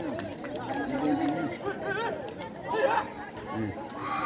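Spectators' overlapping voices at an outdoor volleyball match: chatter and calls from several people at once, with a brief louder moment about three seconds in.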